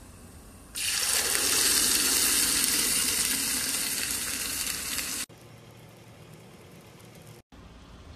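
Blended tomatoes hitting garlic frying in hot oil in a small pot: a loud sizzling hiss starts about a second in, lasts about four seconds and cuts off suddenly, leaving a faint steady hiss.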